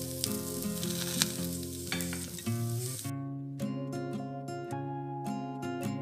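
Bread poha sizzling in a pan while a steel spoon stirs it, with a few clicks of the spoon against the pan, over background music. About halfway through the sizzling stops and only the music goes on.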